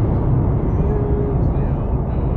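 Steady low rumble of road and engine noise inside the cab of a Toyota Hilux cruising along a sealed highway.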